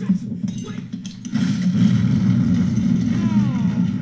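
War-drama soundtrack of a night combat scene: a sudden loud hit at the very start, then from about a second in a heavy, steady rumble, with a man's falling cries near the end.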